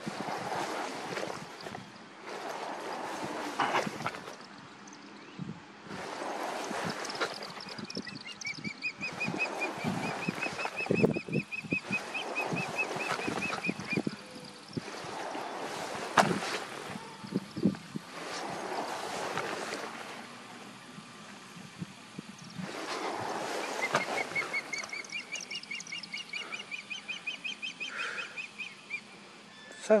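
Osprey giving territorial alarm calls from its nest: two long runs of rapid, high chirping whistles, each several seconds long, the first about a third of the way in and the second near the end. Between them, close rustling of grass and handling noise from crawling.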